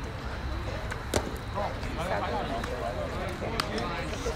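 A baseball pitch popping into the catcher's mitt with one sharp crack about a second in, over a steady murmur of players' and spectators' voices. A second, fainter crack comes near the end.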